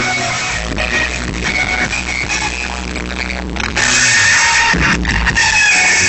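Live amplified rock band with electric guitars playing at full volume, recorded from inside the crowd. About four seconds in the sound jumps louder with a burst of bright, hissy noise.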